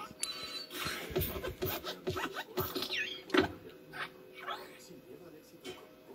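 Television audio played through the TV's speakers and picked up in the room: the Pixar logo's hopping desk lamp, with a run of thumps and a couple of springy squeaks, under a voice.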